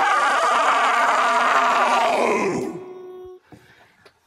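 A long, rough, strained vocal cry lasting about two and a half seconds and tailing off, followed by a brief faint held tone.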